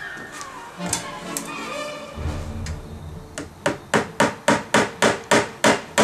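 A hammer drives a nail into a wooden porch column. About halfway through come about ten quick, evenly spaced blows, roughly four a second.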